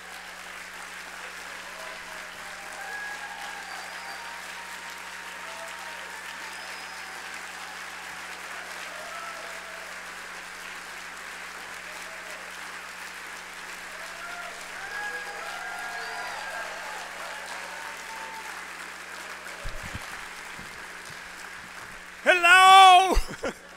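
A large audience applauding steadily, with a few voices among the clapping. There are a few low thumps near the end as the lectern microphone is handled.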